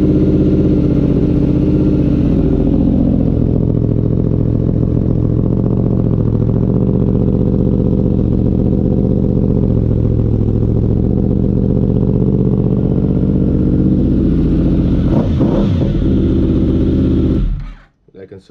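Yamaha quad's engine running at a steady idle just after starting. It stops abruptly near the end.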